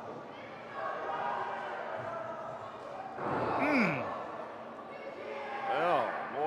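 Murmur of crowd voices echoing in a gymnasium, then one loud man's shout sliding down in pitch about three seconds in.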